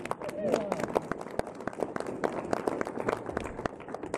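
Audience applause: many separate hand claps at an uneven pace, with a voice briefly heard near the start.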